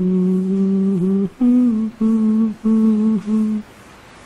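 A man humming a wordless tune close to the microphone: one long held note, then four shorter notes with brief breaks between them, stopping a little over three and a half seconds in.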